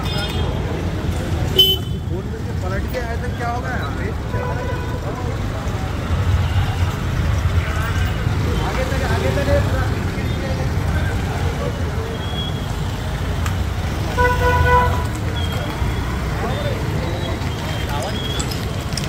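Busy street noise at night: a steady low rumble of traffic and motorbikes, with people's voices in the background and a vehicle horn sounding briefly about fourteen seconds in.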